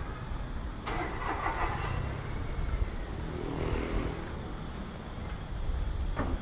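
Street traffic: vehicle engines running with a steady low rumble, and a louder engine sound that starts suddenly about a second in and fades over the next second.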